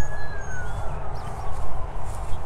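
Wind and handling rumble on a clip-on microphone as the wearer turns and walks, with the level rising and falling unevenly. A faint thin tone slides slowly down in pitch across it.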